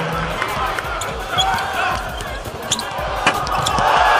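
Basketball game sound on a hardwood court: a ball bouncing and short sharp knocks of play over a steady murmur from the arena crowd, with one louder knock about three seconds in.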